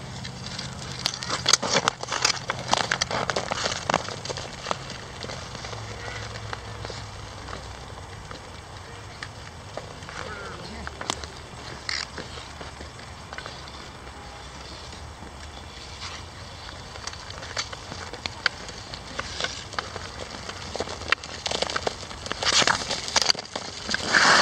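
Hockey skates on frozen pond ice: blades scraping with many sharp clicks and cracks, thickest in the first few seconds and again, louder, near the end.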